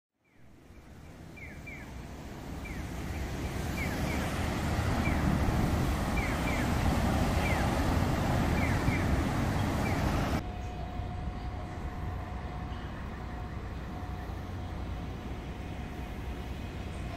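Street traffic noise fading in and building to a steady rush of passing vehicles, with short high chirps now and then. About ten seconds in it cuts suddenly to a quieter outdoor hush with a steady hum.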